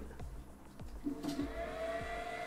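ELEGOO Mars 4 Ultra resin printer starting its print: a steady motor whine comes in about a second in, pitch rising slightly. Soft background music with a slow beat underneath.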